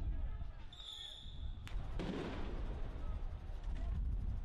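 Street clash with tear gas: crowd voices over a steady low rumble. About a second in, a shrill whistle-like tone lasts nearly a second; it is followed by a sharp crack and then a short, loud burst of noise about halfway through.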